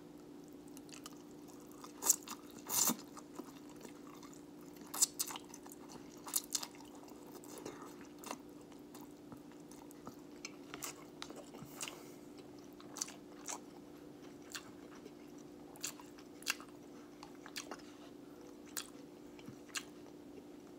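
A person chewing a mouthful of instant cup ramen noodles, with scattered wet mouth smacks and clicks and a longer slurp about three seconds in, over a steady low hum.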